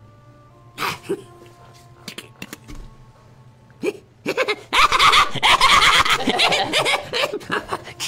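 A few short vocal noises, then a small group of people bursting into loud laughter about halfway through that lasts a few seconds.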